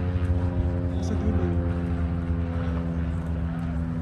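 A steady engine drone holding one pitch throughout, over a low rumble.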